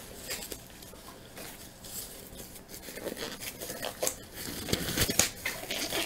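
Black disposable gloves being pulled on: rubbery rustling and stretching with scattered sharp snaps, busier and louder in the second half.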